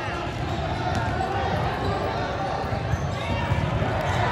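Gym din of many voices chattering, with basketballs bouncing on a hardwood court in the background.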